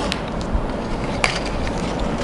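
Handling noise of string being drawn through a cardboard counting board, with two soft clicks, one near the start and one just past halfway, over a steady background hiss.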